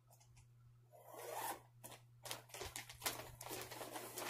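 Rustling and scraping of fabric and yarn being handled close to the microphone, a quick irregular run of scrapes from about a second in, as a crocheted wool blanket is gathered up and brought to the camera. A steady low hum runs underneath.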